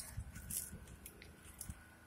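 Faint, irregular footsteps crunching on snow-covered ground, with light scattered crackles.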